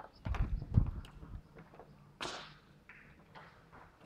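Footsteps and low thumps on a bare floor, with one sharp knock about two seconds in, then fainter steps.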